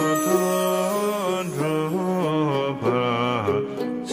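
A man's voice singing a Tibetan Buddhist butter-lamp prayer as a slow, melodic chant. He holds long notes that step from one pitch to the next.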